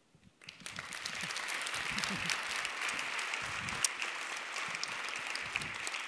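Audience applauding, starting about half a second in and then holding steady.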